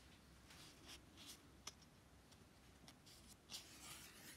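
Faint rustling of sketchbook paper as the pages are handled: several short, soft swishes, the longest near the end as a page begins to turn.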